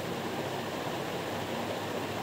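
Steady, even hiss of room background noise.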